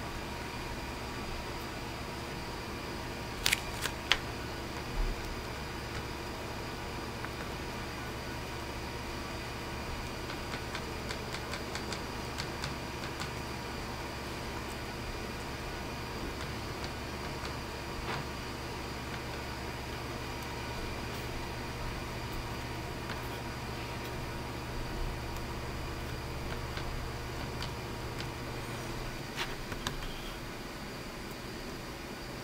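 Steady low room hum, like a fan or electrical equipment, that drops away just before the end. About three and a half to five seconds in there are a few sharp clicks, and later faint light ticks of a brush dabbing powder onto a small plastic model part.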